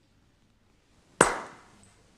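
After about a second of near silence, a single sharp smack or knock with a short reverberant tail that dies away over about half a second.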